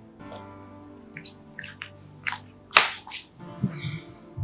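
Soft, sustained background film score, with a series of short, sharp clicks and rustles over it, the loudest a little under three seconds in.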